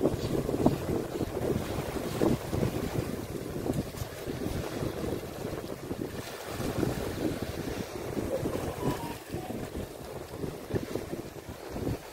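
Wind buffeting the microphone over small waves lapping at the shore, an uneven rushing sound.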